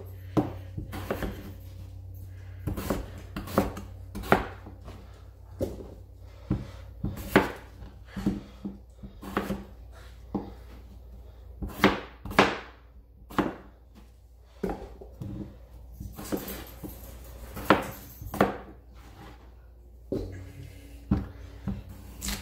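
Chef's knife chopping gold potatoes on a plastic cutting board: irregular sharp knocks of the blade hitting the board, about one a second.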